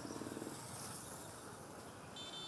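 A motorbike engine running with a fast, even putter for about the first half-second, then fading into a faint, steady street background.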